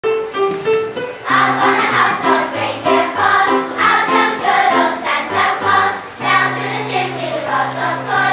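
Children's choir singing a holiday song medley, accompanied by an electronic keyboard. The keyboard plays alone for about the first second before the voices come in over a steady bass line.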